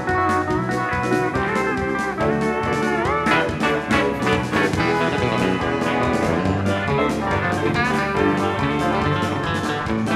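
Live instrumental band music led by a pedal steel guitar, with a rising slide about three seconds in, over drums keeping a steady beat.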